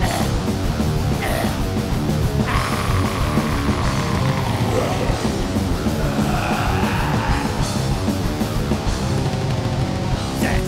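Death metal: heavily distorted guitars and bass over dense, fast drumming, loud and unbroken.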